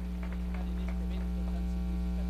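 Steady electrical mains hum in the sound system: a low, unchanging buzz with a ladder of overtones above it.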